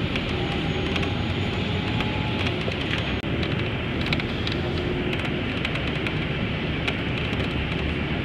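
Steady rumbling running noise of a moving vehicle, with scattered light clicks.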